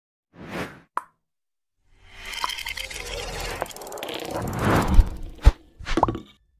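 Logo-reveal sound effects. A short whoosh and a sharp pop come first, then a swelling rush of noise with fine ticks. It ends in two hard low hits about half a second apart, with another whoosh near the end.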